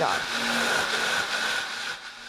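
Countertop blender running on high, puréeing a thick roasted tomatillo and chile sauce: a steady whirring rush with a constant high whine.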